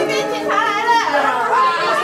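A group of people's voices talking and calling out over one another, without clear words.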